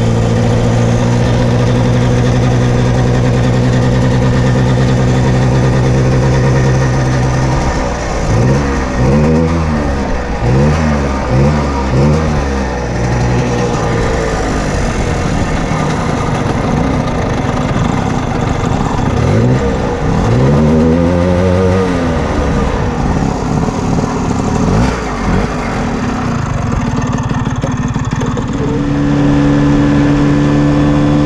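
Vespa 50 Special scooter's small two-stroke single-cylinder engine running at a steady pitch under way. After several seconds it revs up and falls back again and again, about once a second, with a second bout of rising and falling revs later on. It settles back to a steady tone near the end.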